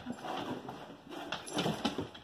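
A large dog moving about close by, its steps and body making rustling and a few soft knocks, most of them about one and a half seconds in.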